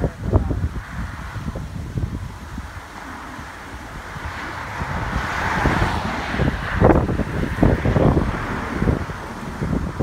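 Wind buffeting the microphone in gusts, with a vehicle passing on the road: a swell of road noise that builds through the middle and then fades.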